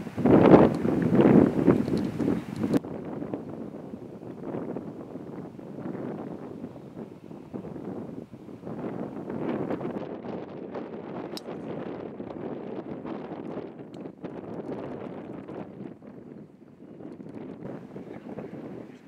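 Wind buffeting an outdoor camera microphone in uneven gusts, loudest in the first few seconds.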